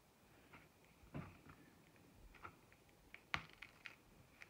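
Near silence with a few faint clicks and taps as small cling rubber stamps are peeled off their backing and handled. The sharpest click comes a little over three seconds in.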